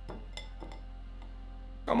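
Drops of green parsley oil falling from a fine-mesh sieve into a glass bowl, giving a few faint light clinks in the first second over a steady low hum.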